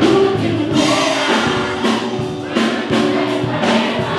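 A song with a large group of children's voices singing along together, loud and choir-like, over the music.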